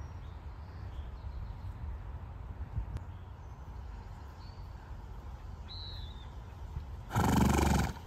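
A horse snorting: one loud blow through the nostrils lasting just under a second, near the end. Before it there is only a low steady rumble and a few faint high chirps.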